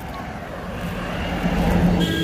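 An engine running steadily and growing louder, a low hum over a noisy rush, as if approaching.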